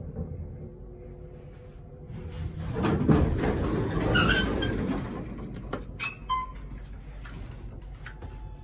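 Old Otis elevator's doors sliding, a swell of rushing noise that builds and fades over about three seconds, followed by a few sharp clicks, over the car's low hum.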